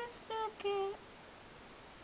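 A woman humming two short, steady notes, then a faint steady hiss of room tone.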